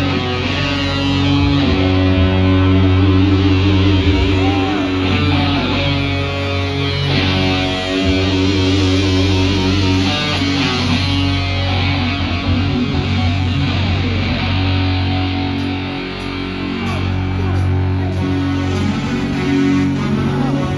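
Live band playing amplified music over a concert PA, with guitar prominent over a heavy bass.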